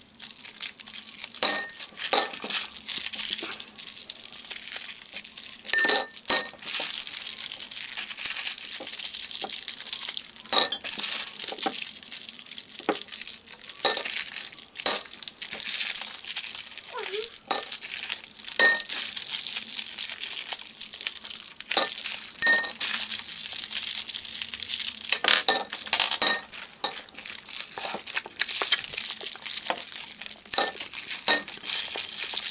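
Cellophane candy wrappers crinkling continuously as peppermint hard candies are unwrapped by hand, with frequent sharp clinks of the candies dropping into glass wine glasses.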